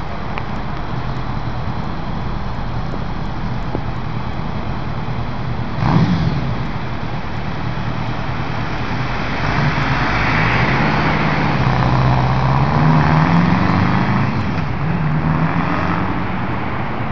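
Street traffic noise, with a steady rush of passing cars. About six seconds in there is a brief jolt. In the second half a vehicle's engine grows louder as it passes close, loudest near the end.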